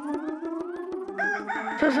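A chicken clucking in a fast run of short clucks, breaking into louder, higher calls a little past the middle, over background music.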